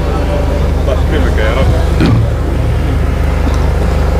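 A steady low hum through the microphone sound system, with faint voices from the audience between one and two seconds in and a single short click about two seconds in.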